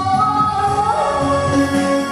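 A woman singing a Vietnamese song into a microphone over a karaoke backing track, holding long notes that slide from one pitch to the next.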